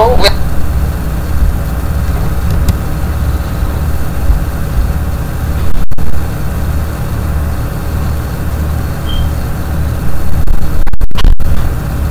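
A steady low rumble, loud and unbroken, with its energy in the deep bass, cut by brief dropouts to silence about six seconds in and twice near the end.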